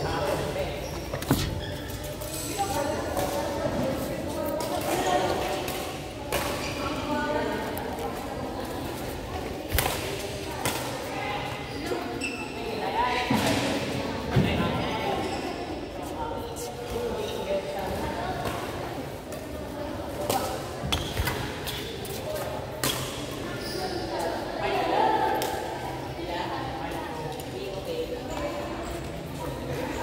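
Voices talking in a large, echoing badminton hall, with scattered sharp knocks and thuds from rackets, shuttlecocks and feet at irregular intervals.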